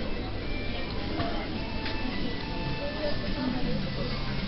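Café ambience: background music mixed with indistinct chatter, with a couple of light clicks partway through.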